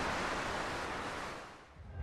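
A rushing wash of ocean surf that holds steady and then fades out about a second and a half in.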